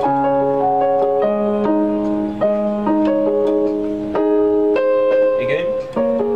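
Portable electronic keyboard on a piano voice playing a slow arpeggiated chord progression: held bass notes in the left hand under broken-chord notes in the right, entering one after another and ringing on. A short rising glide sounds near the end.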